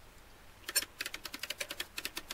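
Webster mainspring winder being cranked to wind up a heavy clock mainspring, its ratchet giving a fast, even run of sharp clicks, about eight a second, starting under a second in.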